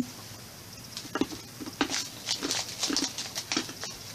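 A person chewing small hard tablet candies like Sweetarts, a run of about a dozen irregular crunches starting about a second in.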